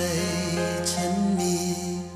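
Slow Thai song playing, an instrumental passage of held notes with a melody line moving over them.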